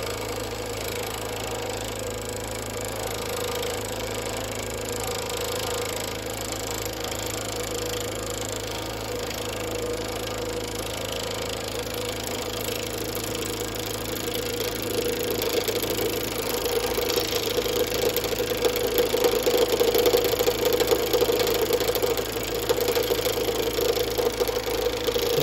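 Wood lathe motor running with a steady hum while the Sorby RS 3000's cutting head moves in and out against the spinning maple, adding a fast rattling buzz. The buzz grows louder a little past halfway, as the cutter bites deeper.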